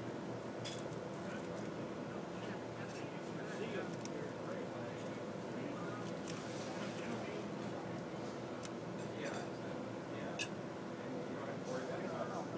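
Indistinct chatter of several people talking in the background, too far off to make out words, with a few sharp clinks and clicks scattered through it; the loudest click comes about ten seconds in.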